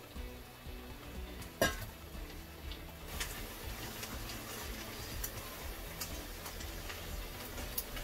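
Silicone spatula stirring mushrooms into risotto in a pan, with soft scraping and small clicks and one sharp knock about a second and a half in, over faint background music.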